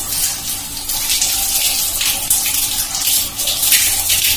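Tap water running onto long hair and splashing, the splashing surging and easing unevenly as hands rub and squeeze the hair to rinse out henna.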